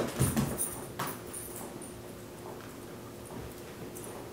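A small dog jumping down from a recliner onto a hardwood floor. Its landing and footfalls are loudest near the start, a sharp knock comes about a second in, and then come faint ticks of its claws as it walks about.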